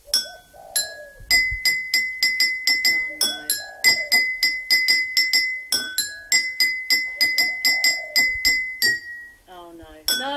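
Metal spoon tapping drinking glasses filled with water to different levels, playing a tune: quick runs of the same high ringing note, about four strikes a second, stepping now and then to a lower glass. The notes stop shortly before the end.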